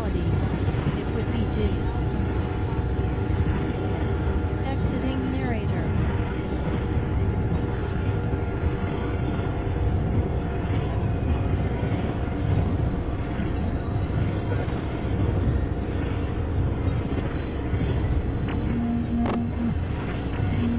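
Dense experimental noise mix: several music tracks layered at once into a continuous rumbling wall of sound, with steady drone tones and buried voice fragments. A single sharp click comes near the end.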